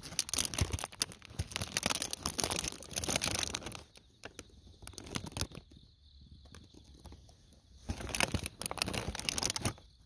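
Crinkly rustling and crunching in two long stretches, through the first few seconds and again near the end, while treats are handled and eaten. Autumn insects chirp steadily underneath.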